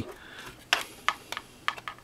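Small, irregular plastic clicks and taps as a SATA cable connector is handled and lined up against a mini PC's motherboard, about eight light ticks in the second half.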